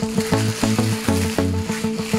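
Background music with a steady beat and bass line, with a hissing noise laid over it.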